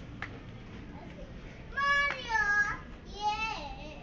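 A young child's high-pitched voice calling or squealing, two loud gliding cries about two and three and a half seconds in, over steady background hubbub of a shop.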